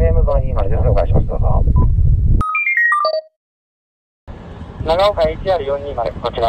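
A voice coming through a handheld digital radio's speaker. About two and a half seconds in, a quick run of electronic beeps steps between high and low pitches, then the sound cuts out dead for about a second before a voice starts again.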